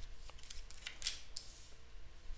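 Cards being drawn and slid down onto a wooden table: a few short, quiet swishes and scrapes of card on card and on the tabletop.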